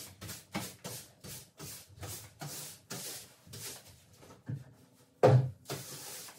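Brisk back-and-forth rubbing strokes of a long-handled floor-cleaning tool on the floor, about two to three a second, with one louder knock near the end.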